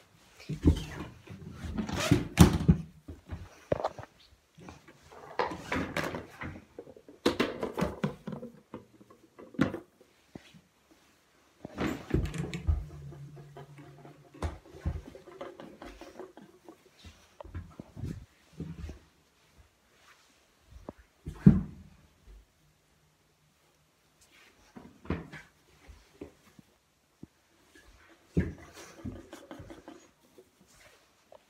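Hamster cage being put together and filled by hand: irregular knocks, clatters and rustles as parts and items are set in place, with one sharp knock about two-thirds of the way through.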